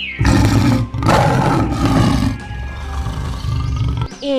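A lion roaring: two long, rough roars in the first two seconds or so, trailing off into a lower, quieter rumble, over light background music.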